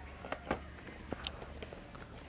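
Handling noise close to a hand-held clip-on microphone: a few light, scattered clicks and taps over a steady low hum.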